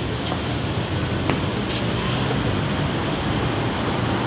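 City street traffic: a steady rumble of passing vehicles, with a few faint clicks.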